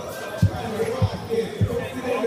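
Dance music played over a DJ's sound system, with a heavy kick drum thumping steadily about every 0.6 seconds under a melody and voices.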